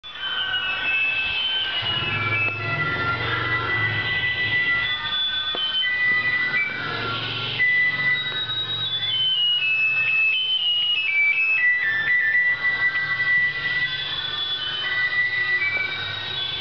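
A simple electronic jingle of stepped, beeping single notes playing on and on, the kind of tune an ice cream seller's loudspeaker plays, with a low hum underneath.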